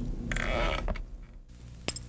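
Small plastic gag toy being worked by hand, giving a short creaking rasp, followed near the end by a single sharp click.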